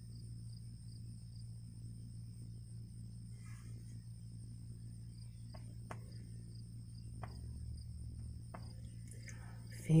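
Faint steady background hum with a thin, high, steady whine and a few faint clicks. At the very end a voice starts singing a long held note, the first tone of a chant in the key of G.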